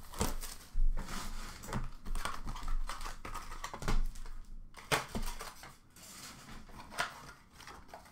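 A cardboard hobby box of hockey cards and its wrapped packs being handled on a counter: irregular clicks and knocks with short rustles, the loudest about a second in and again about four seconds in.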